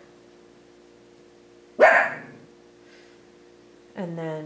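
A dog barks once, a single sharp bark about two seconds in, over a faint steady hum.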